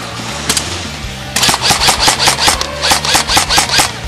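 Airsoft guns firing rapid, uneven strings of shots, starting about a second and a half in, after a single shot near half a second.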